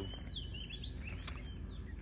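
Birds giving short chirps over a low, steady outdoor rumble, with a single sharp click a little past halfway.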